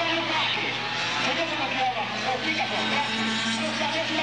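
Air-cooled two-stroke kart engines racing, several at once, their pitches rising and falling as they accelerate and brake.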